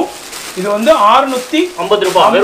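The crisp rustle of a thin stone-work saree being handled and spread out flat, with a voice speaking briefly in the middle.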